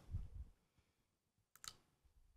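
Near silence, with a faint low thud at the start and one short click about one and a half seconds in.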